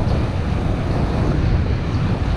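Wind buffeting the microphone of a camera carried on a moving bicycle: a steady low rumble.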